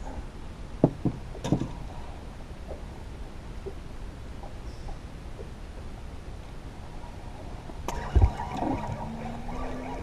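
Steady low noise of wind and water around a small fishing boat, with a few light knocks in the first two seconds and a heavier thump about eight seconds in.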